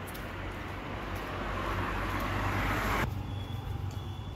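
A road vehicle approaching, its rushing noise growing louder for about three seconds and then cut off abruptly.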